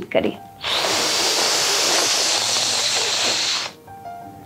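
A long, steady hissing breath drawn in through clenched teeth for about three seconds, the sheetkari cooling breath. It starts about half a second in and stops sharply near the end.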